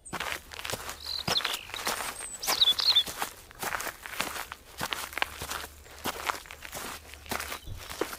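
Footsteps walking outdoors, an irregular run of soft steps about two or three a second, with birds chirping briefly about a second and two and a half seconds in.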